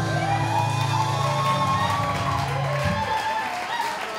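Music ending on a low held note that stops about three seconds in, with the audience cheering, whooping and applauding at the close of a belly dance.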